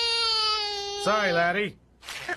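A cartoon character's voice making one long, high, cry-like wail without words, held steady and then wavering and falling away about a second in. It stops shortly before the end.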